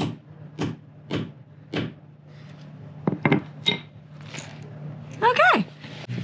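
Short-handled sledgehammer striking a snap-button setting tool on a metal block, setting a snap into a fabric curtain: four even blows a little over half a second apart, then a few lighter knocks a second or so later.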